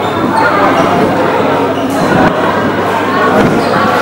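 Players' voices and calls echoing in a sports hall, with dodgeballs thudding and bouncing on the wooden court floor.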